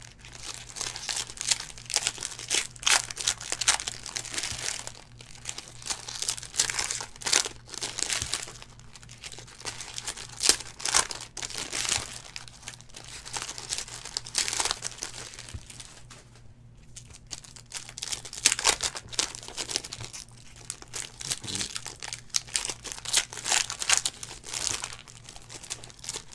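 Foil wrappers of 2019 Donruss Optic football card packs being torn open and crumpled by hand, in irregular bursts of crackling, with a short lull about sixteen seconds in.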